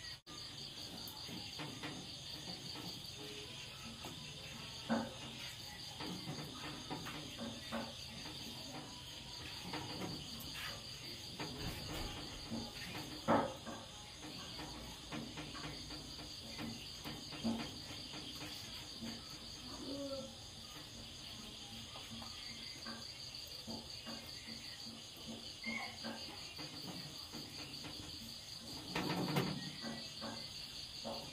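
Crickets chirring in a steady high trill, with scattered short knocks of a kitchen knife cutting raw pork against a wooden chopping block, the loudest about thirteen seconds in.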